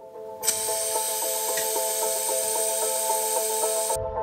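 Air hissing steadily out of a Toyota Land Cruiser 200's tyre valve as the tyre is let down. It starts about half a second in and cuts off abruptly near the end, over background music.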